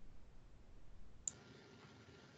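Very quiet pause with a single sharp click about a second in, after which a faint steady hum comes in.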